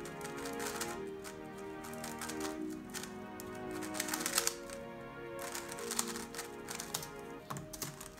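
Rapid plastic clicking of a DaYan TengYun V2 3x3 speedcube being turned fast during a timed solve, over background music with a steady melody.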